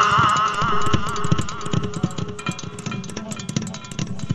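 Male voice singing a Saraiki folk song, holding a wavering note that fades out about a second in. A steady drumbeat with a held instrumental note underneath carries on after the voice drops out.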